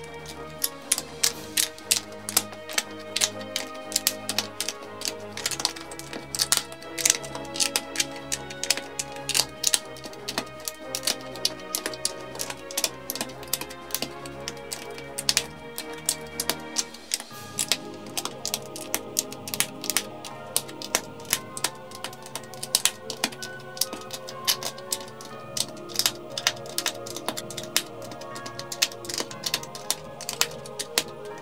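Plastic LEGO bricks and plates clicking and snapping together as they are pressed into place by hand, in quick succession, several clicks a second, over background music.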